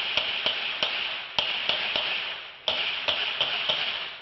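Gunshots fired in rapid succession, sharp pops about three a second over a steady hiss, picked up by a home security camera's microphone.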